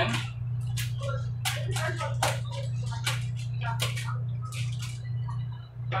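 A spoon knocking and scraping against a cooking pot as butter is stirred into macaroni: irregular sharp clicks over a steady low hum.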